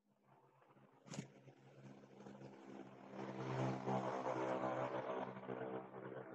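An engine running at a steady pitch, growing louder over the first few seconds, with a sharp click about a second in.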